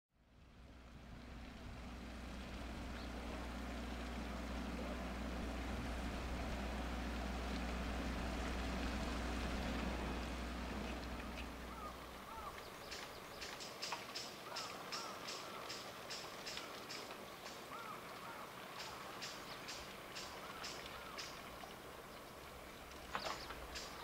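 A steady low engine hum, as of a boat idling, runs for the first half and stops about halfway through. Then come footsteps on a concrete path, about three steps a second, with small bird chirps in the background.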